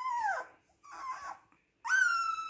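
Siberian husky puppy whimpering: a whine falling in pitch that fades about half a second in, a fainter whine around a second in, then a long, steady high-pitched howl starting just before the end.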